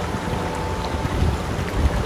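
Rushing water of a fast mountain river running over rocks: a steady, even noise of flowing water.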